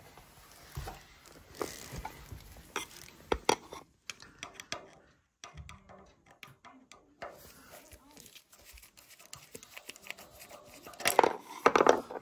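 Scattered small metallic clicks and scrapes of a screwdriver working the isolation valve on a gas fire's iron supply pipe, as the fire is isolated during a gas tightness test for a leak. A louder burst of sound comes near the end.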